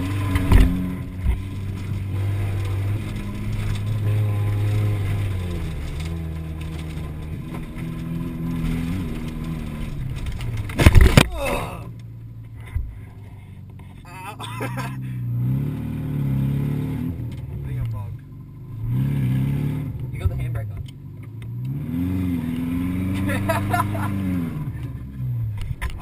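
Car engine heard from inside the cabin, revving up and falling back again and again as it is driven hard on a dirt track. About eleven seconds in there is a sharp, loud thump, the loudest sound here.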